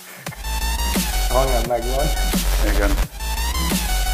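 Dubstep-style electronic backing track playing, with a pulsing deep bass and held synth notes. It drops out briefly about three seconds in.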